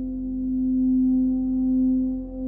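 Eurorack modular synthesizer holding one steady, sustained mid-pitched tone that swells gently louder and eases back, over a low pedal-bass drone, with reverb.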